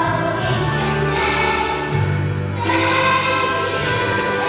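Children's choir singing a song with instrumental accompaniment, the low accompaniment notes changing about two seconds in.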